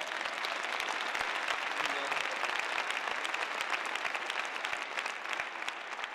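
Audience applauding in a large hall: dense clapping that starts suddenly and begins to die down near the end.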